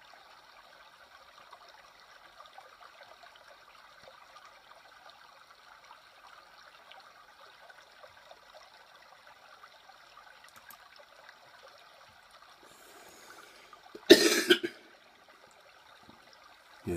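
A faint steady hiss, then about 14 seconds in a man clears his throat once with a short, loud cough.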